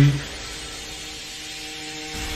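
Anime episode audio playing at low volume: a steady drone of a few held tones over a faint hiss, with no break.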